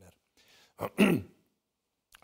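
A man briefly clearing his throat about a second in: a short first sound, then a louder one that falls in pitch.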